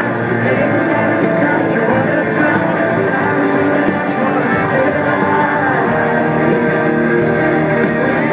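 A rock band playing live through a large sound system: strummed electric guitars over drums, steady and loud, in the instrumental opening of a song before the vocals come in.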